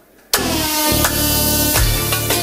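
Loud music cuts in suddenly after a brief quiet moment, a held melody line over a strong bass.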